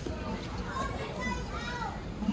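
Indistinct background voices, a child's among them, over a steady low hum.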